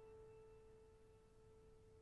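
A single piano note dying away at the end of a piece, a faint held tone fading slowly.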